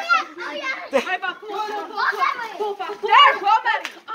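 Children's voices chattering and calling out over one another, with no clear words, and a sharp short knock about a second in.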